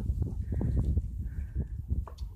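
Sheep bleating faintly, two short calls, over a low rumble and scattered knocks.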